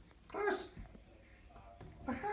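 A domestic cat giving one short meow about half a second in, with a faint, quick chattering sound near the end.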